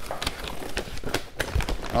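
A cardboard shipping box and its foam insulation liner being handled: a quick, irregular run of knocks, taps and rustles as a cardboard flap is set down on a stone countertop and the liner is gripped.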